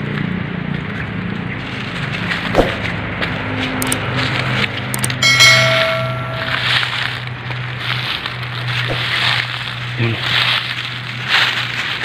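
Footsteps crackling through dry leaf litter and brush, with one steady high tone lasting about a second, about five seconds in.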